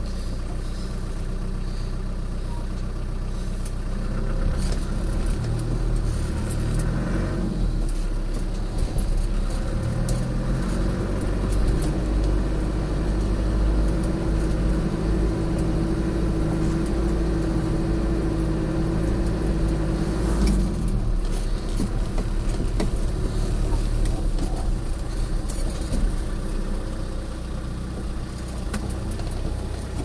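Off-road 4x4's engine running at low speed as it crawls over a rocky track, the note rising and falling with the throttle, with occasional knocks and clatters.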